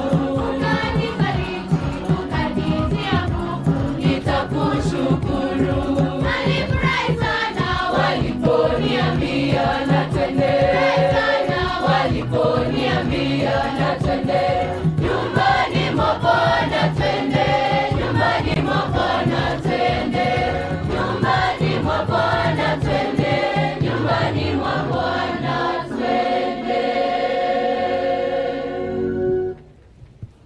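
A large girls' choir singing a hymn to hand-drum accompaniment; the singing stops abruptly just before the end.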